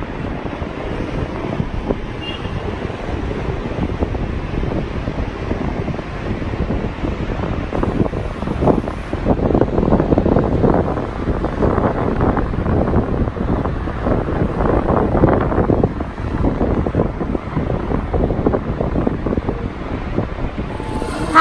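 Wind buffeting the microphone in uneven gusts, strongest in the middle stretch.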